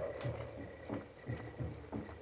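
Low drums beaten in an uneven, repeating rhythm of about two to three beats a second, heard from afar: Yaqui signal drums carrying news from the mountains.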